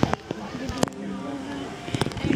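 A singing voice with held notes, with two sharp clicks, one right at the start and one just under a second in.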